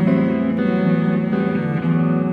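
Electric guitar and bowed cello playing together in a jazz duet, with held notes changing every half second or so.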